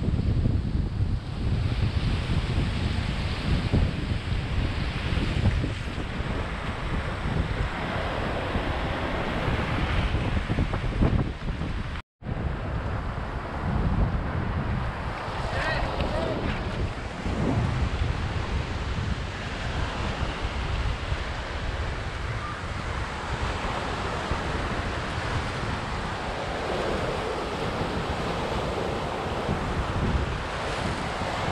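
Surf breaking and washing around the shore rocks, with wind buffeting the microphone as a heavy low rumble. The sound cuts out for a moment about twelve seconds in.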